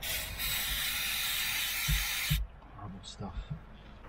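Aerosol spray can with a straw nozzle hissing in one continuous burst of about two and a half seconds, cutting off suddenly, with two low knocks near the end of the spray and a few light handling knocks after it.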